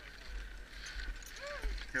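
Wind rumbling on the microphone while riding a drift trike, with a faint steady hiss above it. One short call rises and falls about one and a half seconds in.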